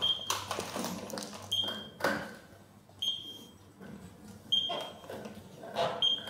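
Xiaomi Ninebot Mini self-balancing scooter giving a short high beep about every second and a half, with scattered knocks and scuffs as a rider steps onto it.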